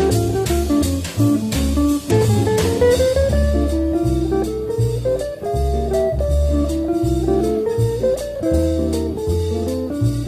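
Jazz guitar instrumental: an electric archtop guitar plays a moving melody line over a stepping bass line and drums.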